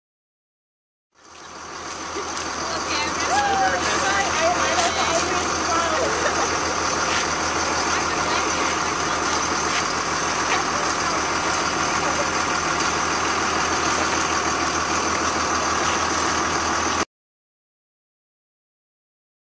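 A motor vehicle engine idling steadily, with indistinct voices and a few clicks over it. The sound fades in about a second in and cuts off suddenly near the end.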